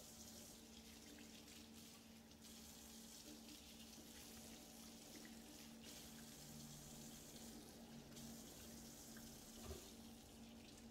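Faint running water from a kitchen tap splashing into a stainless steel sink as dishes are scrubbed with a sponge and rinsed under the stream, with a small knock near the end.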